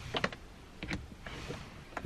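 A few light clicks and taps of plastic car interior trim and cable being handled, with a brief rustle about one and a half seconds in.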